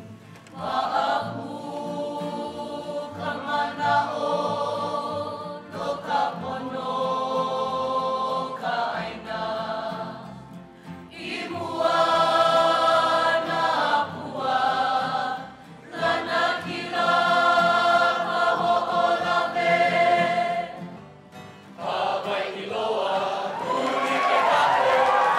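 A choir singing in long, held phrases, with short breaks between them.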